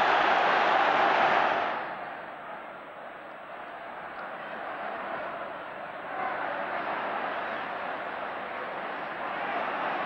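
Large football stadium crowd cheering loudly, cutting off suddenly after about two seconds to a quieter, steady crowd noise from the terraces that swells a little about six seconds in.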